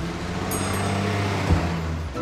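A steady vehicle engine sound mixed with music, with a sharp hit about one and a half seconds in.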